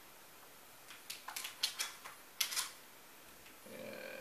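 Small clicks and crinkles of batteries and their packaging being handled while unboxing. A quick run of them starts about a second in and lasts under two seconds.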